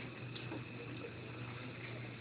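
Quiet room tone with a steady low hum and a faint high whine; no distinct sound event.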